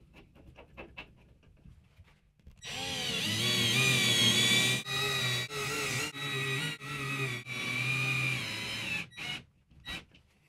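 Cordless drill/driver driving screws into plastic wall plugs: after a few faint clicks, the motor whines in a series of trigger pulls, its pitch rising and falling under load, about five longer runs followed by two short bursts near the end.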